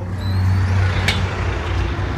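Road traffic from passing cars and trucks, a loud steady rumble that rises as the doors open onto the street, with a faint high rising squeal near the start and a short sharp click about a second in.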